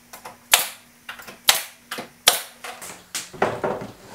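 Pneumatic brad nailer firing three nails, about a second apart, into a wooden cleat, each shot a sharp crack, with small clicks between.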